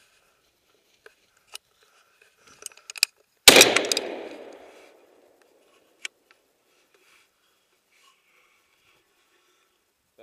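A single loud gunshot about three and a half seconds in, its echo dying away over a second or so, fired at a fox driven out of its den. A few faint clicks come before it and one after.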